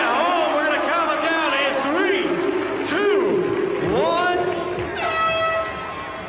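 A man's excited, high-pitched voice calling out over an arena crowd cheering and clapping. About five seconds in comes one long held note.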